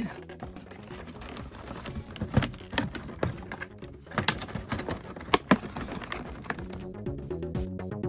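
Cardboard box and clear plastic blister packaging clicking and crackling in scattered sharp snaps as a toy model's box is pried open, over steady background music.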